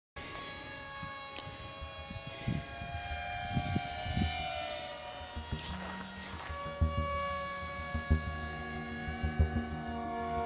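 Graupner Terry RC model plane's motor whining as it flies overhead, its pitch gliding, mixed with background music of sustained tones. Gusts of wind thump on the microphone now and then.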